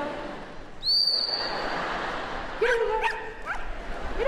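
A gundog whistle blown in one steady high blast about a second in, over background hall noise, followed in the second half by a few short yelps from an excited dog.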